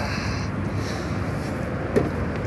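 Steady rumbling rush of wind on the microphone, with a short knock just before the end.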